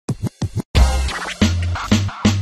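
Channel intro jingle: hip-hop-style electronic music with DJ scratch effects. Two short scratch hits open it, and about three-quarters of a second in a loud beat with heavy bass comes in.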